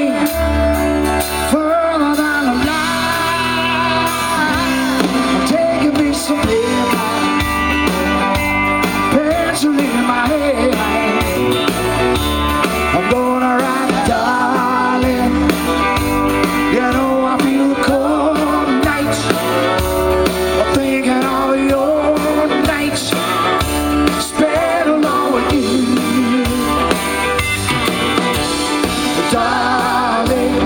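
Live country-rock band playing: electric guitar, drums and fiddle under a male lead singer, loud and steady throughout.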